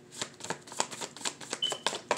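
A deck of tarot cards being shuffled by hand: a quick, irregular run of card snaps and slides, several a second.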